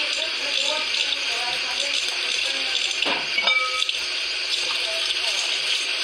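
Water running steadily from a tap into a sink, with faint voices behind it and a brief high tone about halfway through.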